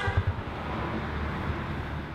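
Low, steady background rumble of a night-time street, with a few soft low thumps near the start.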